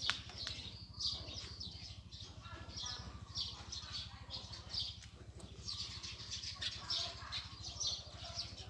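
Small birds chirping, short high chirps repeating every half second or so.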